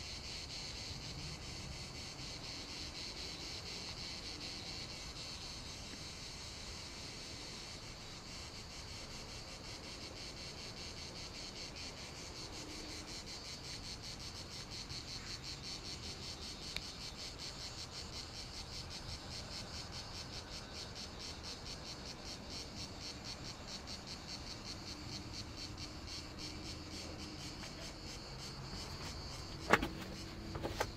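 Cicadas buzzing: a steady high-pitched chorus that turns into a fast, even pulsing chirr in the second half. A single sharp knock just before the end.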